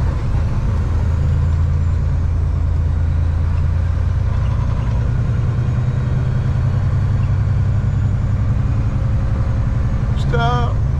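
Semi truck's diesel engine running with a steady low drone, heard inside the cab along with road noise as the truck drives on the highway.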